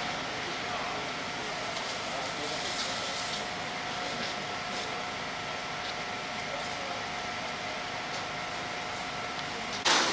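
Steady rushing noise of a firefighting scene: a fire hose's water jet and the burning building, over a faint steady mechanical whine, with a few faint crackles. Just before the end the sound jumps abruptly to a louder rushing.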